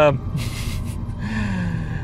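A man's sharp in-breath, then a short, faint hesitant hum in the voice, over a steady low rumble inside a car cabin.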